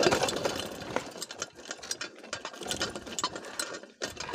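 Mountain bike rattling and clicking as it rolls over a rough, rutted dirt track, with irregular clatter that is loudest about the first second.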